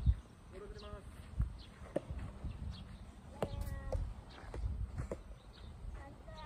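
Low wind rumble on the microphone, with a sharp knock right at the start and two softer knocks about a second and a half and two seconds in. Two short high calls come about half a second in and about three and a half seconds in.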